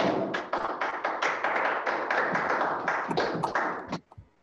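Hands clapping over a video call, a steady run of about five claps a second that stops near the end.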